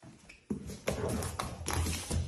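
A series of sharp taps and knocks, irregular and several to the second, beginning about half a second in over a low steady hum.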